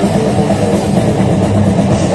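A brutal death metal band playing loud live through a festival PA: distorted guitars and bass over a drum kit, with no letup.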